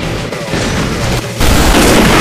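Action-film gunfight sound effects over music: dense gunfire, then a loud blast about one and a half seconds in that lasts about a second.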